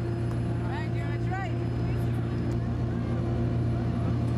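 Amphibious tour boat's engine running with a steady low drone, with passengers' voices and a few brief high-pitched exclamations about a second in.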